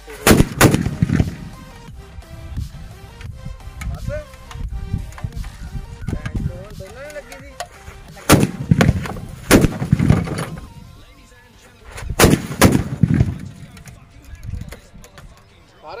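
Sutli bomb firecrackers exploding on top of a CRT television: a series of loud, sharp bangs, two at the very start, more about eight to ten seconds in, and a final pair about twelve seconds in.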